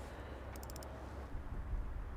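Quiet background out on a boat on open water: a faint low rumble, with a quick run of about six faint, high ticks about half a second in.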